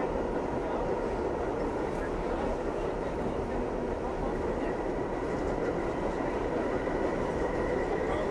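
R68A subway car running through the tunnel, heard from inside the car: a steady rumble of wheels on rail with a faint, steady high whine above it.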